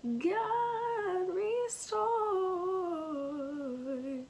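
A young woman sings an unaccompanied gospel song, heard over a video call. She holds two long notes with a breath between them: the first rises and then holds, and the second slides slowly downward.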